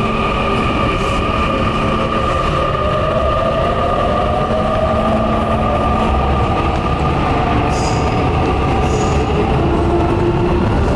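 Metro train running through the station: a steady rumble with a motor whine that rises in pitch over several seconds as the train gathers speed.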